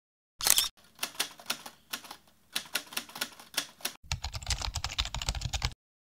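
Typewriter keystrokes as a title sound effect: a loud clatter just after the start, then irregular single clacks, quickening into a fast, dense run of typing for the last two seconds.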